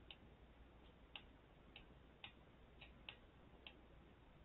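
Faint, irregular ticks of a stylus tapping on a tablet's writing surface while numbers are handwritten, about eight light taps over near-silent room tone.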